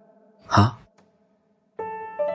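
A short spoken 'haan' from a voice in the song's dialogue interlude, over soft sustained keyboard tones that fade out. After about a second of silence, a sustained keyboard chord comes in near the end.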